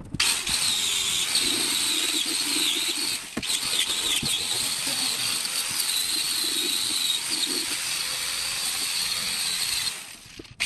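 Angle grinder with a wire brush wheel scrubbing old glue, padding and rust off the bare steel floor pan, a steady high whine with scraping that dips briefly about a third of the way in.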